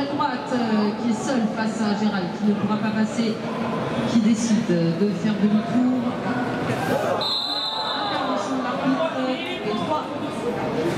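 Voices talking in a large indoor hall, speech running almost throughout, with a brief high steady tone about seven seconds in.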